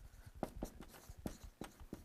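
Dry-erase marker writing on a whiteboard: a faint series of short strokes as letters are drawn.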